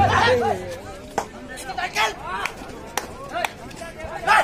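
Men's voices calling and shouting in short bursts around an open-air kabaddi court during a raid, over a background of crowd chatter, with three sharp smacks.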